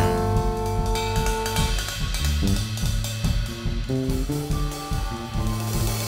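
Live big band music: a held brass chord dies away in the first two seconds, leaving the rhythm section of drum kit, electric bass and keys playing a steady groove.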